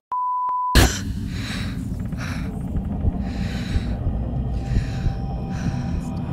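A steady electronic beep, a test-tone-like pure tone, for under a second, cut off by a sharp click. Then a low, steady rumbling drone with faint hissing swells every second or so, the dark intro of the edited soundtrack.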